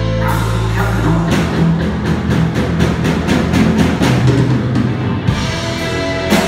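Live rock band playing, amplified through the venue's PA: a low held note gives way about a second in to a steady run of drum strokes, about five a second, over guitars and bass.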